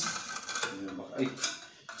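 Men's voices, with a short exclamation, over light clinking and scraping.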